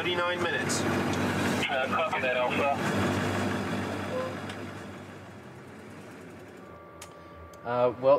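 AM General Humvee driving over gravel, a steady engine drone with tyre noise that fades away about four to five seconds in as the truck pulls off, leaving a faint hum.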